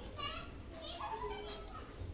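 Children's voices talking and playing in the background, high-pitched and fairly faint.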